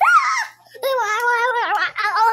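A young boy's voice: a short high squeal at the start, then about a second in a long, wavering sung tone.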